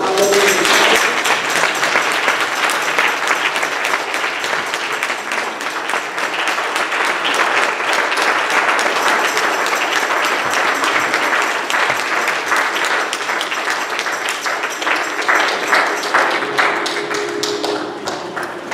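Church congregation applauding: dense, steady clapping that eases off near the end.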